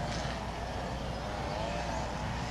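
A motor running steadily: a low drone with a higher tone above it that wavers gently up and down in pitch.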